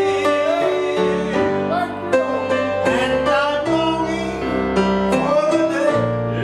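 A southern gospel song performed live: a man singing the lead over instrumental accompaniment, his held notes wavering with vibrato.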